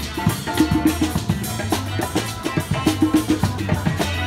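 A street band playing: a drum kit keeping a steady beat of bass drum and snare, with guitars through small amplifiers and a hand drum.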